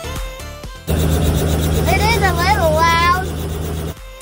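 Background music for about a second, then it cuts to live sound: a steady low hum with a high-pitched voice calling out, its pitch swooping up and down. Music returns just before the end.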